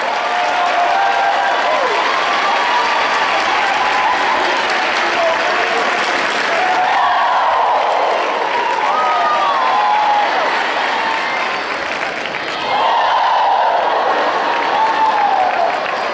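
A large audience applauding steadily, with voices calling out and cheering over the clapping.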